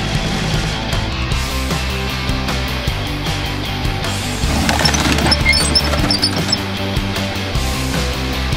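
Rock music with distorted guitar and a steady beat. About halfway through, a crunch with glass tinkling rises over it as a tracked armoured vehicle drives over a car and crushes it.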